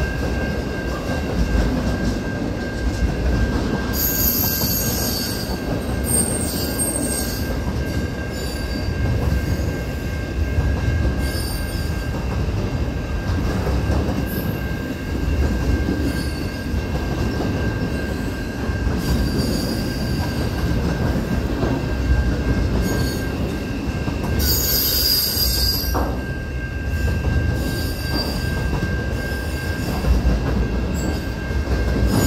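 Intermodal container freight train rolling past: a steady rumble of wagons and wheels on the rails. High-pitched wheel squeal comes in twice, around four to seven seconds in and again around twenty-four to twenty-six seconds.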